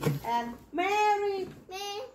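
A child's voice singing three short held notes in a sing-song way.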